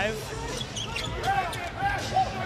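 Basketball arena game sound: crowd noise under a basketball being dribbled on the hardwood court.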